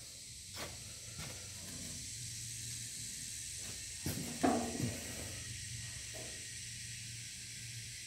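Steady background hiss with a faint low hum, broken by a few light knocks and a brief murmur about four and a half seconds in.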